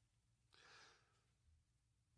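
Near silence: room tone, with a faint breath about half a second in.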